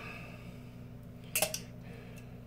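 A table knife faintly scraping as it spreads mustard on bread, then one short, sharp clink of the metal knife against crockery about one and a half seconds in, over a steady low hum.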